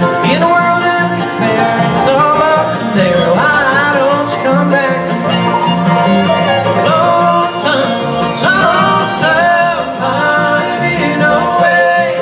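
Live bluegrass band playing: banjo, mandolin, acoustic guitar, upright bass and fiddle, in a stretch between sung lines, with sliding melody lines over a steady bass pulse.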